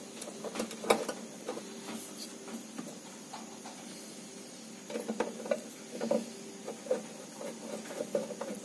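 Light, scattered clicks and taps of parts and cables being handled inside a spectrophotometer's housing, with a sharper click about a second in and a cluster of small taps later on.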